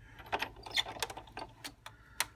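Clear acrylic cutting plates clicking and tapping as they are handled and fed into a Cuttlebug die-cutting machine, a handful of light, separate clicks.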